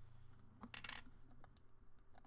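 Faint sound effects of an animated subscribe button: a quick metallic jingle of clicks about two-thirds of a second in, followed by scattered light ticks.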